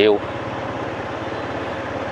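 Steady low engine hum with even low pulsing, over general street noise.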